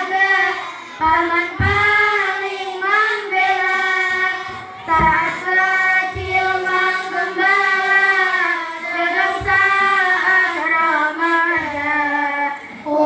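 A girl singing solo into a microphone, a slow melody with long held notes that waver and turn in pitch. A few short low thumps sound beneath the voice.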